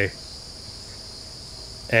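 Steady high-pitched trilling of crickets, a continuous insect chorus without breaks; a man's voice starts again near the end.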